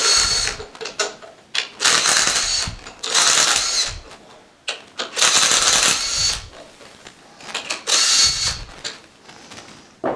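Cordless drill with a half-inch socket spinning the head bolts out of a diaphragm pump, in about five short runs of roughly a second each, its motor whining, with brief pauses between bolts.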